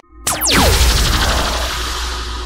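Channel logo sting: a short gap, then a sharp falling whoosh over a deep bass boom, fading into a held shimmer of ringing tones.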